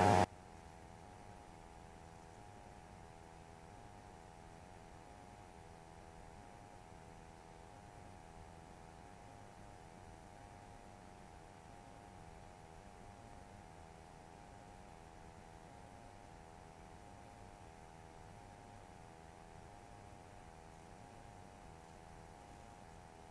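Faint steady hiss and hum of the aircraft's cockpit intercom audio feed, with a few high steady tones and a low drone that pulses slowly underneath.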